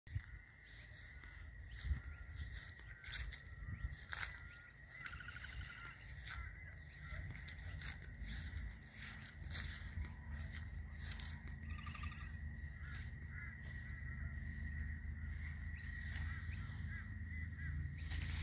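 Footsteps and phone handling while walking across a lawn: scattered soft thumps and clicks over outdoor ambience. A steady high-pitched tone runs underneath, with a few faint bird calls.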